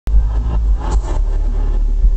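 Loud live pop concert music from an arena's sound system, dominated by heavy, steady bass as picked up by a camera in the crowd.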